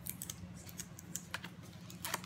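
Tape being peeled and handled on a paper cookie cut-out: a scatter of small crackles and clicks.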